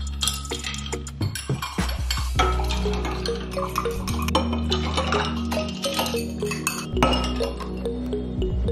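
Metal straws clinking against glasses and ceramic mugs as iced coffees are stirred, repeated light clinks scattered throughout, over background music.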